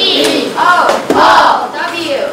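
A group of children shouting together, several loud high-pitched calls in a row.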